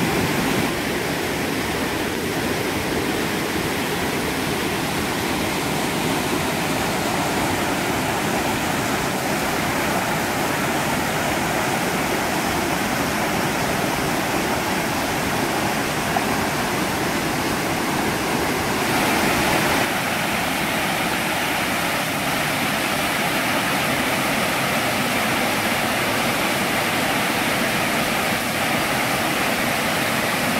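Mountain creek water cascading over rock ledges and small waterfalls: a steady, full rush of white water. Partway through, the rush turns somewhat brighter and hissier.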